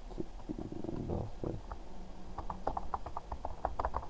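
Computer keyboard being typed on: a quick run of light key clicks through the second half. Before that, a faint low rumble.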